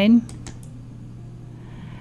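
Quiet handling of book pages and paper on a craft table, with a few light clicks shortly after the start.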